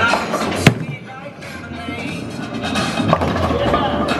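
Ten-pin bowling ball released onto the wooden lane, landing with a sharp thud about half a second in, then rolling down the lane with a low rumble. A fainter knock comes about three seconds in as it reaches the pins, over background music.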